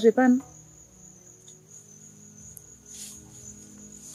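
Crickets chirring in a steady, unbroken high trill, with a few faint rustles about three seconds in.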